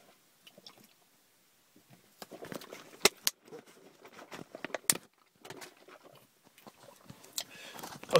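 Small handling sounds of plastic: scattered sharp clicks and short rustles, the two loudest about three and five seconds in.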